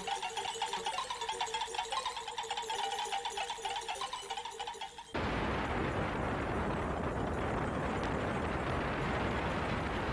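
Synthesized sound effect of rapidly pulsing, warbling electronic tones. About five seconds in it cuts off abruptly, and a steady rushing roar takes over: a rocket lift-off effect as the toy spaceship takes off.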